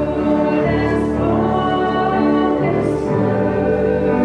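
Hymn sung by voices over keyboard accompaniment, in long held notes that change about once a second.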